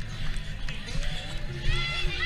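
Crowded street-run ambience picked up by a camera carried at a run: footfalls and a low rumble on the microphone, under crowd voices and music. Higher-pitched voices or singing come in over it from about one and a half seconds in.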